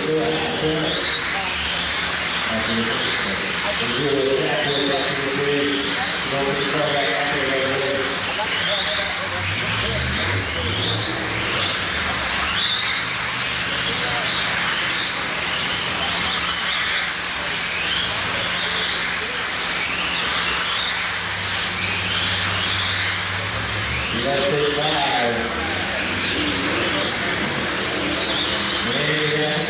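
A pack of RC sprint cars racing on a dirt oval, their small electric motors whining in overlapping rising pitches again and again as the cars accelerate down the straights.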